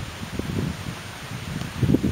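Wind buffeting the built-in microphone of a Sony Bloggie MHS-CM5 camera, heard as irregular low rumbling gusts.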